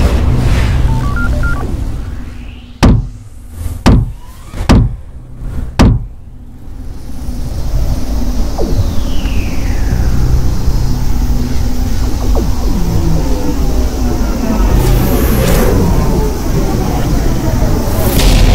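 Edited cinematic sound effects: a low rumble, then four sharp booming hits about a second apart, then a long swelling rumble with a falling whoosh a few seconds later.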